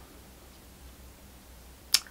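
Quiet room tone, then a single sharp click just before the end.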